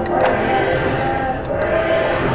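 Casino floor ambience picked up by a small body-worn camera microphone: slot machines playing overlapping electronic tones and jingles, with a few faint clicks.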